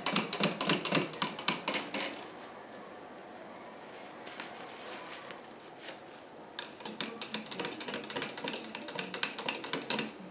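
A stirrer clicking rapidly against the inside of a clear plastic cup as food colouring is stirred into the water, in two spells with a quieter pause of a few seconds between.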